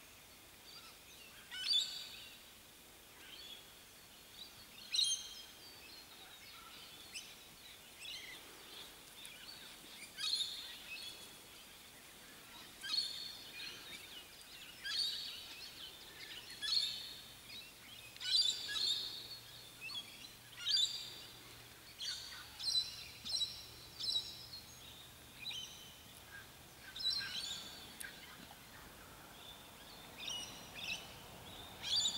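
Wild birds calling from the surrounding bush: short, high calls repeated every second or two, coming more often in the second half.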